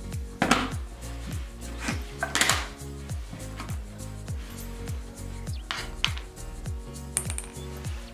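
Background music with a steady beat, over a few sharp clicks and knocks as Montessori golden bead pieces are set down in a wooden tray.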